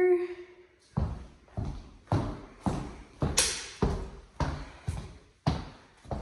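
Footsteps on a hard laminate floor in an empty, echoing room: about nine steps at a steady walking pace of nearly two a second.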